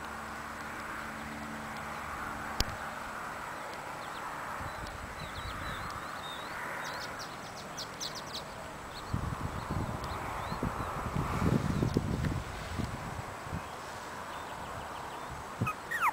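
Outdoor ambience with a steady hiss and a few short, high chirps about halfway through, followed by several seconds of irregular low rumbling on the microphone.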